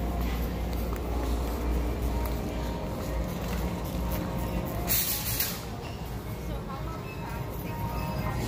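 Big-box store ambience: background music, distant voices and a steady low hum, with a short hiss about five seconds in.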